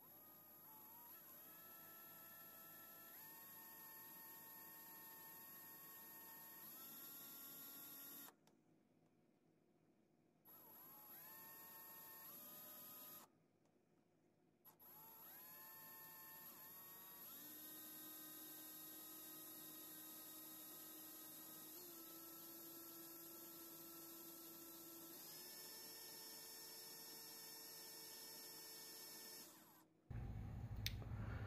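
Electric drill running slowly with a faint whine as it spins a copper wire core for coil winding. The whine rises as the drill spins up, shifts in pitch with the trigger, and stops twice for a couple of seconds.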